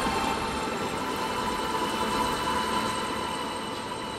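A steady mechanical hum with a faint whine running through it, easing off slightly toward the end.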